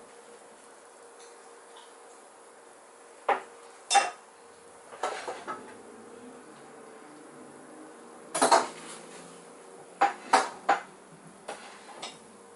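Dishes and metal cutlery clinking and clattering: about eight sharp separate knocks over several seconds, the loudest a cluster a little past the middle, with a faint steady hum underneath.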